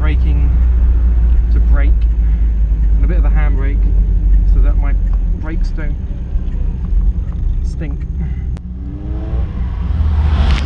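Steady low rumble of an MGB's engine and road noise heard from inside the car as it drives slowly, a little quieter from about halfway through. A voice speaks in short snatches over it.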